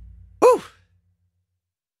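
The low tail of a hardcore punk song's last note dies away, then a short voiced sigh comes about half a second in, rising and then falling in pitch. After it there is dead silence.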